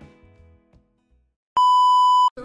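Background music fades away into near silence. About one and a half seconds in, a loud, steady, high-pitched test-tone beep cuts in: the TV test-pattern tone of a glitch transition effect.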